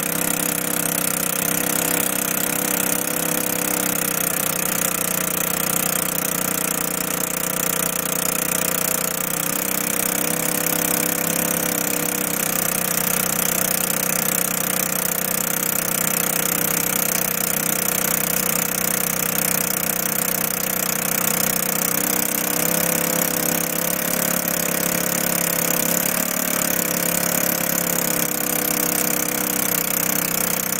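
Small engine of a scooter tow rig running steadily under load while towing a paraglider aloft, its pitch shifting slightly a few times.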